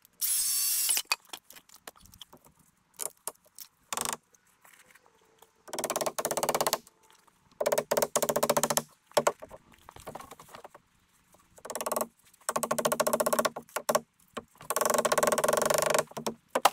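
A cordless impact driver runs in five short bursts of about a second each, driving screws into wooden framing. A few light knocks come between the bursts.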